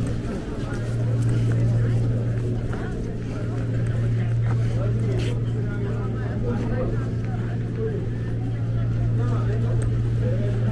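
Indistinct voices of people walking and sitting close by, over a steady low hum.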